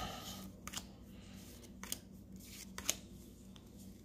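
Baseball cards being dealt one at a time off a hand-held stack onto a pile: faint ticks and snaps of card on card, about one a second, over a low steady hum.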